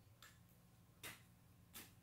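Three faint short clicks, about three-quarters of a second apart, from a small deck of cards being handled and a card drawn from it.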